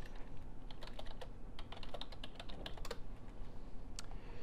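Typing on a computer keyboard: a quick, irregular run of quiet key clicks.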